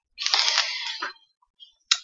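Quilt fabric rustling as it is handled in front of the microphone: one burst of about a second.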